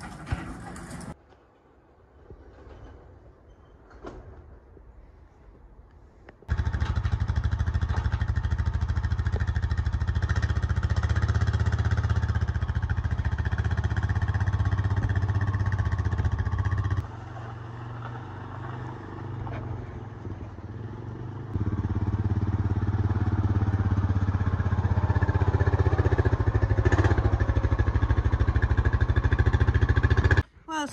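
Honda Rancher ATV engine running steadily, coming in suddenly about six seconds in after a quieter stretch, dropping lower for about four seconds midway, then running loud again to the end.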